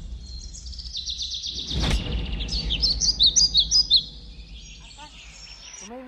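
Birds chirping, a quick run of repeated high chirps that is loudest about two and a half to four seconds in, then fainter calls. A low rumble sits under the first two seconds, with one sharp click near two seconds in.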